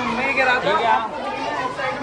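Chatter of several young men talking over one another at close range.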